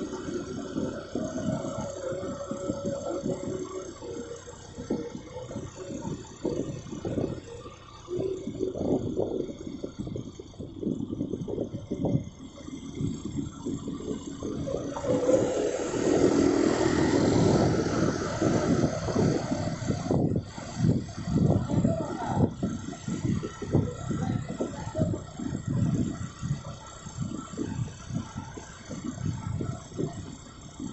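Uneven wind rumble buffeting the microphone of a moving vehicle, with road noise. A louder, fuller rush of noise swells about halfway through and lasts a few seconds.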